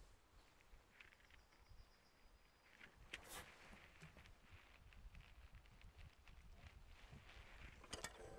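Near silence, with a few faint scrapes and clicks of a long two-handled knife pressing into the hard rind of a wheel of aged goat cheese, the clearest a little after three seconds in.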